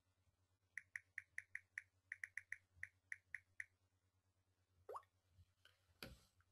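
Faint phone notification tones from incoming review alerts: a quick run of about fourteen short high beeps, then a single rising chirp about five seconds in.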